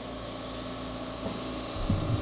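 Oxygen-infusion airbrush gun hissing steadily as it sprays a mix of oxygen and hydrating serum onto the skin of the face. There are a few low knocks near the end.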